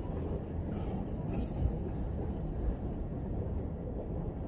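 A long train of empty railway tank wagons rolling slowly past: a steady low rumble of wheels on rail, with a couple of faint knocks.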